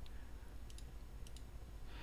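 Three faint computer mouse clicks about two-thirds of a second apart, the later two each a quick double tick of button press and release, over a low steady hum.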